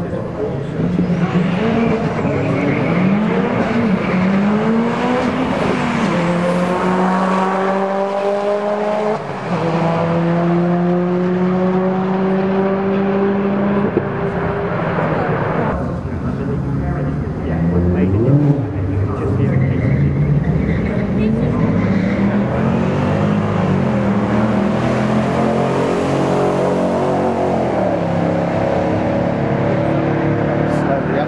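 Drag-racing car engines at the start line, revved and held at high revs for several seconds, then launching hard. After a cut, a second pair of cars revs and accelerates away, their pitch climbing in steps through the gear changes.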